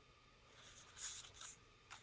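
Faint rustle of paper cards being handled and slid against each other, loudest about a second in.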